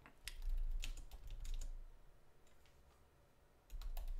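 Typing on a computer keyboard: a quick run of key clicks over the first couple of seconds, a few more after a pause, then keys again near the end.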